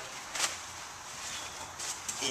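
Paper towel handled and torn from a roll: a short rip about half a second in and another brief rustle near the end.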